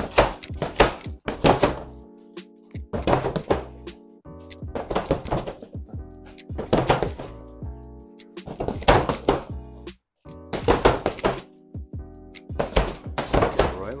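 Boxing gloves striking an Everlast Powercore freestanding heavy bag in quick combinations: a flurry of thuds about every two seconds. Background music with sustained chords plays under it.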